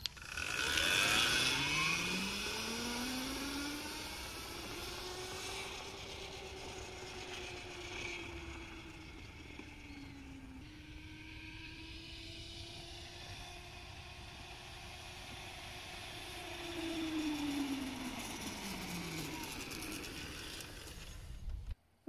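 Homebuilt electric motorbike's motor whining as it pulls away. The pitch climbs over the first few seconds, holds while it cruises, dips and rises again about halfway through, then falls as it slows near the end, over tyre and road noise. It fades as the bike rides off and grows louder again as it comes back.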